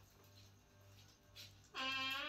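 Mostly a faint low hum. About three-quarters of the way in, a loud held tone with many overtones begins and lasts under a second: the workout app's signal that the exercise set is over and the rest begins.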